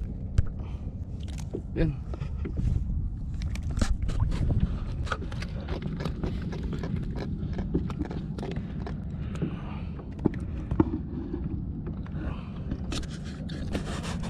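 Scattered clicks, knocks and scrapes of handling on a plastic sit-on-top kayak as the camera and gear are moved about, over a low steady rumble of wind and water on the microphone.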